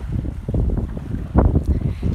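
Wind buffeting a phone's microphone: an uneven low rumble that swells in gusts, loudest about one and a half seconds in.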